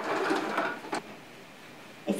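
A wig head being turned on its stand: a short scraping rub lasting just under a second, ending in a small click.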